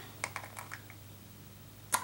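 A few faint, light clicks in the first second, then quiet room tone.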